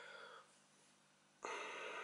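A soft breath, most likely a nasal exhale or sigh from the man holding the phone, starting about one and a half seconds in and lasting under a second; otherwise near silence.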